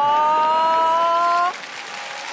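A long held pitched tone that rises slightly and cuts off suddenly about one and a half seconds in, followed by a steady hiss of audience noise.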